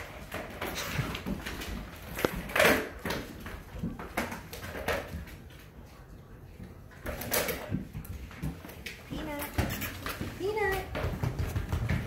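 Puppies playing on a hardwood floor: scattered knocks and scuffles of paws and toys, loudest about two and a half and seven seconds in. A few short high-pitched sliding sounds come about ten seconds in.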